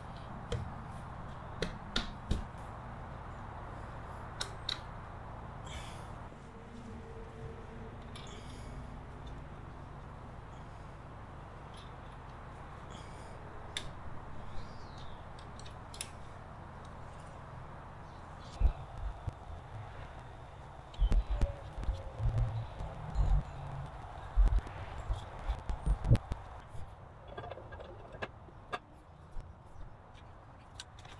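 Clicks and metal clinks of parts and hand tools being handled as the clutch cover is refitted to a Honda ATC 125M engine, with a run of louder low knocks and thumps about two-thirds of the way through, over a steady background hiss.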